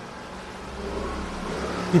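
A low, steady engine rumble that swells slightly in the middle and then eases.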